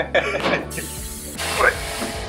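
A steady hiss sets in about a third of the way in and grows stronger near the end, with laughter and brief voices over the start.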